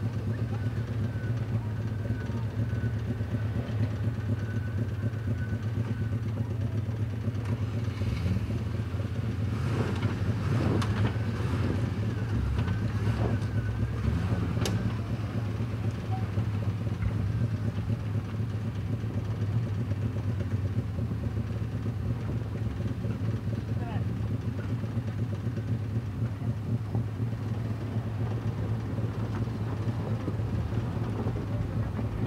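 Land Rover Defender 90's engine running at low, steady revs as the 4x4 crawls over a rough off-road trial course. Voices call out in the middle.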